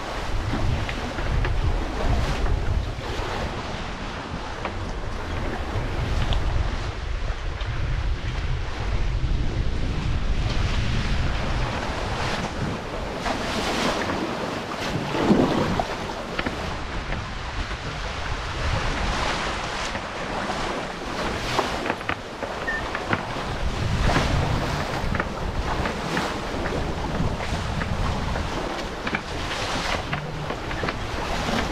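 Wind buffeting the microphone over the rush and splash of choppy open water along the hulls of an F-27 trimaran under sail, with one louder splash about halfway through.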